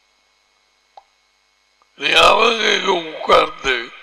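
A man's voice: after a pause of near silence, loud vocal sounds break out about halfway through and run for almost two seconds. There is a faint click about a second in.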